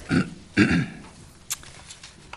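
A person clearing their throat into a microphone, two short rough bursts, then a single light click.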